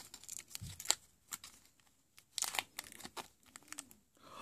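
Wax-coated aluminium foil crinkling and tearing as it is unwrapped by hand, in short scattered bursts of crackle.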